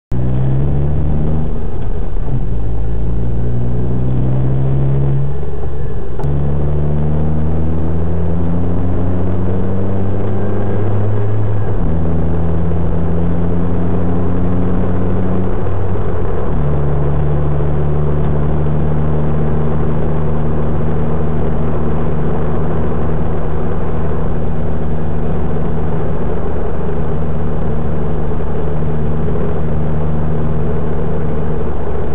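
A car's engine accelerating through the gears, its pitch climbing and then dropping sharply at each of about four upshifts, then running steadily at cruising speed from about halfway through, with road and wind noise, heard from inside the car.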